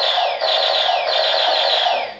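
Electronic blaster sound effect from a Moose Toys Really RAD Robots MiBro toy robot's speaker: a quick run of falling laser-gun zaps over a steady tone, lasting about two seconds.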